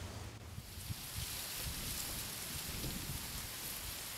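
Faint, steady hiss-like rushing noise with a few soft low thumps.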